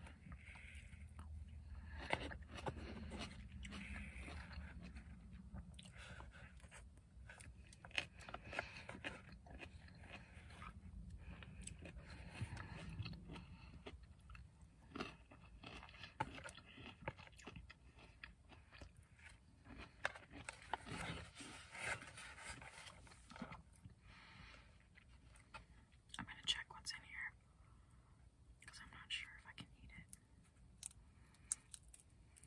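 Close-miked ASMR eating sounds: chewing and biting food, with many small clicks and wet mouth sounds.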